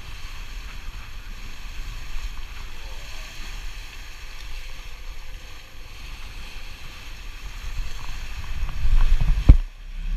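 Wind buffeting the microphone over the rush of water along the hull and wake of a sailing boat moving fast through choppy sea. Near the end the rumble swells louder, then a sharp knock.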